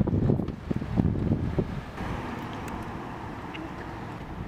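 Wind buffeting the microphone in uneven low gusts for the first two seconds, then settling into a steadier outdoor rush.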